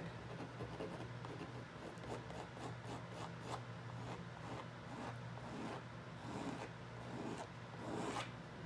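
A small pad rubbed and scraped back and forth across thick oil paint on a board, in quick repeated strokes about two or three a second, breaking up the painted surface.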